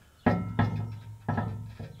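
Two metal knocks from the canopy's mounting brackets meeting the tractor's ROPS as the canopy is worked up out of its slots. Each rings with a steady tone and fades within about half a second, the first about a quarter second in and the second past the middle.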